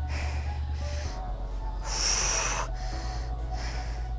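A woman breathing hard from exertion, with a forceful exhale about two seconds in and a lighter one at the start, over quiet background workout music with a steady low bass.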